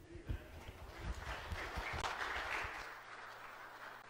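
Brief scattered applause from a congregation after a choir anthem, swelling about a second in and dying away a couple of seconds later, with a few low bumps early on.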